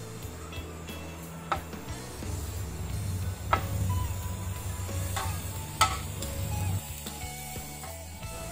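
Squid sizzling on a hot ridged grill pan, with a few sharp clicks of a utensil against the pan as the pieces are moved and turned.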